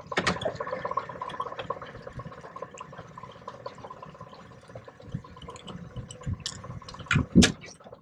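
Steady hum of the boat's motor while trolling, with water splashing against the hull and scattered light clicks; a couple of louder knocks come near the end.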